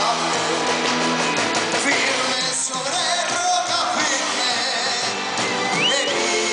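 Live band playing a rock-style song loud and steady, with a male lead singer singing into a microphone over the instruments.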